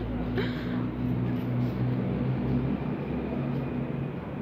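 Steady low hum of an idling vehicle engine, holding one even pitch throughout.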